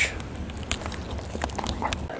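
Pallet-wood fire burning in the open firebox of an outdoor wood burner: a low even hiss with a few sharp crackles and pops scattered through it.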